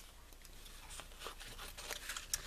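Faint rustling and a few soft ticks as velvet ribbon is handled and cut with scissors.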